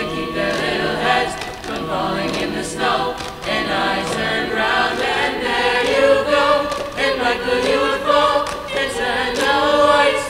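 A mixed high school choir singing together, many voices in harmony, with longer held chords in the second half.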